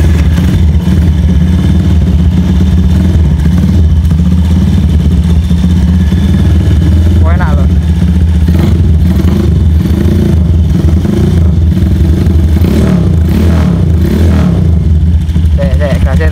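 Honda Tiger's single-cylinder four-stroke engine idling steadily in neutral, loud and even with no revving.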